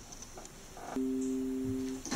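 A steady, pure two-note tone, like a sine tone or tuning fork, comes in about halfway through and holds dead level until the end; the first half is near quiet.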